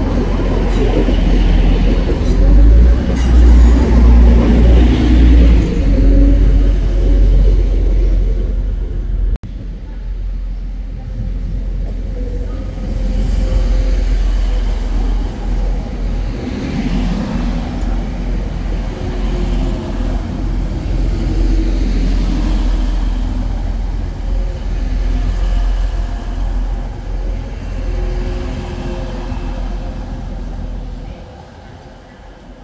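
TransPennine Express Class 185 diesel multiple unit moving through the station, its underfloor diesel engines giving a deep, steady rumble and drone. It is loudest in the first nine seconds, with a sudden break about nine seconds in, then continues a little quieter.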